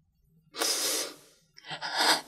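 A woman's audible breath between phrases of emotional testimony: one breath about half a second long, then a second shorter breath near the end.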